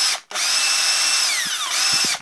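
Makita 18V LXT cordless drill-driver spinning free with no load, a tool about ten years old and still working properly. It runs in trigger pulls: a short burst at the start, then a longer run of about a second and a half whose whine drops as it winds down, then another short burst near the end.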